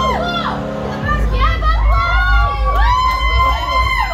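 A group of children cheering and shouting at once, their high voices overlapping, over music whose heavy bass comes in about a second in.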